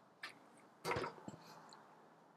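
Light metal clicks and a knock from working the rapid fire damper on a Weber Summit Charcoal Grill: one sharp click near the start, a louder knock about a second in, then a few small ticks.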